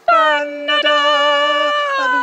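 An unaccompanied voice singing long held notes, each held steady and then stepping to a new pitch, about once a second.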